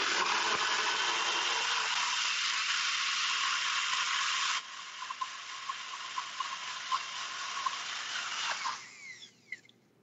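NutriBullet Pro 900-watt personal blender running, blending strawberries, blueberries and chia seeds into a jam. It runs loud and steady, becomes noticeably quieter about halfway through, then spins down with a falling whine near the end.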